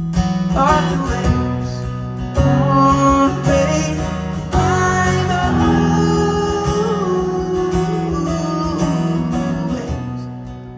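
Live acoustic guitar strummed with a man singing into a microphone over it.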